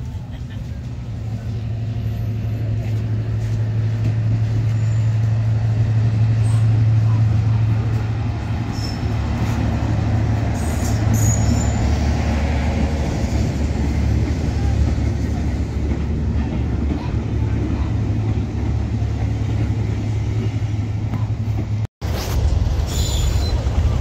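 Diesel locomotive engine running with a deep, steady drone. It grows louder over the first few seconds, peaks about six to seven seconds in, then holds.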